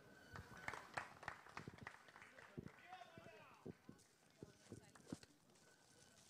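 Near silence, with faint scattered clicks and a brief faint voice in the distance.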